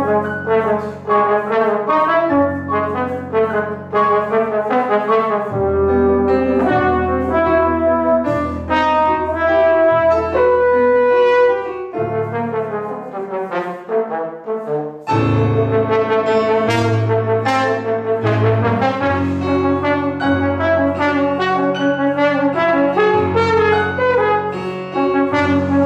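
pBone plastic trombone playing a melody over digital stage piano accompaniment. The low piano chords drop away between about twelve and fifteen seconds in, then the piano and trombone come back in fuller.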